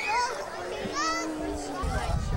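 Children's high-pitched voices calling out briefly over background crowd chatter.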